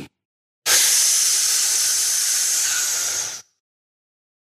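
A burst of loud, steady hiss, strongest in the high range, starting suddenly under a second in and cutting off just as suddenly after nearly three seconds.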